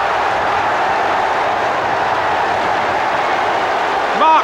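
Football crowd cheering after a goal: a steady, even wall of noise with no single voices standing out.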